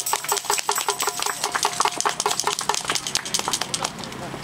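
A small crowd applauding: many separate hand claps in an uneven patter, dying away just before the end.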